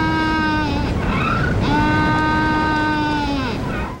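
Galapagos penguin's braying call, a lonesome, painful call in two long, steady, buzzy notes with a short break between them, played from a field recording with a background hiss.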